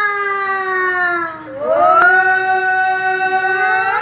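High-pitched women's singing of an Assamese aayati naam devotional chant: long held notes that glide slowly downward, with a brief dip and break about a second and a half in before the next held note.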